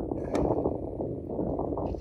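Wind rumbling on the microphone, with one short click about a third of a second in.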